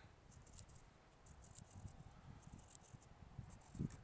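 Near silence: a light wind rumble on the microphone, with faint, scattered high-pitched ticks.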